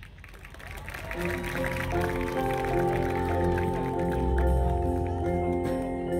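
Marching band brass playing: after a quiet start, a sustained chord enters about a second in and swells, with more notes joining and low brass holding the bottom.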